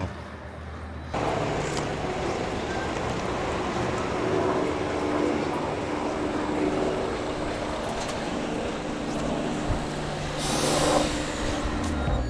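Outdoor street traffic: a vehicle engine running with steady road noise, starting about a second in, and a brief louder hiss near the end.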